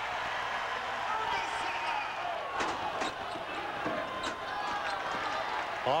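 Steady crowd noise in a basketball arena after a home-team basket, with a few sharp knocks of the ball bouncing on the hardwood floor.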